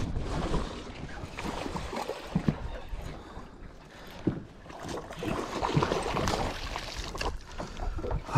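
Wind and water lapping around a small fishing boat, with faint clicks and handling noise from a baitcasting rod and reel during a cast and retrieve.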